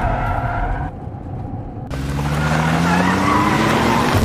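Car driving with road noise, then its engine revving up from about two seconds in, the pitch rising steadily as it accelerates. At the end the rise breaks off for a gear change.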